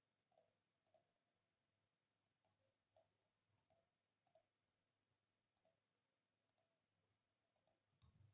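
Near silence with about a dozen faint, irregular computer mouse clicks.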